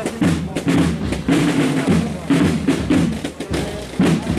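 Procession band playing a march, with bass drum and snare drum prominent under the tune.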